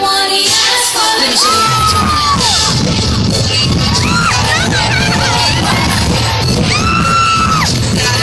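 Loud live pop music over a concert hall PA, heard from within the audience. The bass beat drops out for about the first second and a half, then comes back. High held, gliding voices and crowd yells sit over the music.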